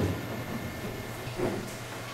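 Quiet classroom room tone: a low, steady hiss with a faint hum and no clear voices.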